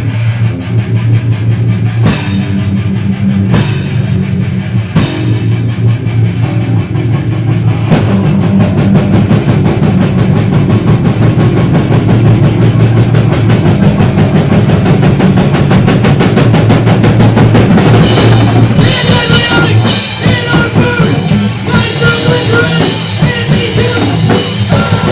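Punk rock band playing live, electric bass and guitar with no vocals: cymbal crashes about two, three and a half and five seconds in, then the full drum kit comes in about eight seconds in and the band plays together. Brighter guitar notes come through near the end.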